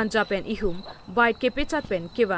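People talking, their voices following one another without a break, with a faint steady high tone behind them.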